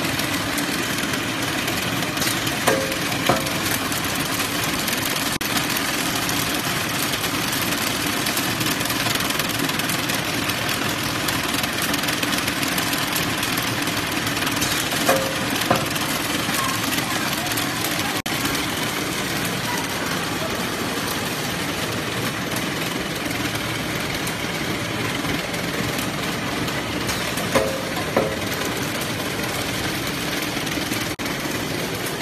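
Automatic paper-straw group wrapping machine running, a steady mechanical clatter and hum. A pair of short sharp sounds half a second apart comes round about every twelve seconds.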